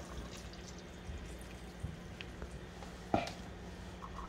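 Half-and-half poured into a pot of simmering soup, a faint liquid sound, with a single sharp knock about three seconds in.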